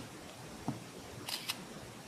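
A Samsung Galaxy smartphone plays its camera-shutter sound, a quick double click about a second and a half in. It is the signal that a screenshot has just been captured with the Menu and power keys.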